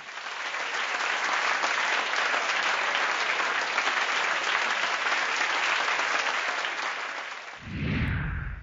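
Audience applauding steadily, dying away near the end as a low swell comes in.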